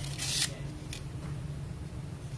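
Short scrape of a hand saw's steel blade moving in its green plastic handle as the saw is handled, followed by a faint click about a second in.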